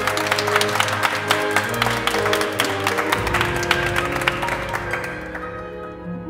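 Chamber orchestra playing a loud, busy passage of many rapid notes with no singing, thinning out and fading near the end.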